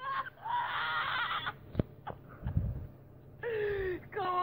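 A person's voice making a drawn-out vocal sound for about a second and a half, then a sharp click and a low thud, and near the end a short vocal sound falling in pitch.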